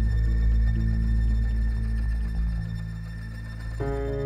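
Live violin holding one long high note over a low keyboard and bass drone, with slow, ambient backing; near the end a new chord comes in on the keyboard.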